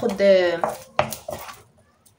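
Wooden spoon stirring caramel-coated popcorn in a nonstick frying pan, giving a few sharp knocks and scrapes against the pan around a second in.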